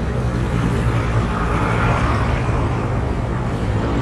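Steady roadside traffic noise, with a low, even engine hum from a vehicle close by.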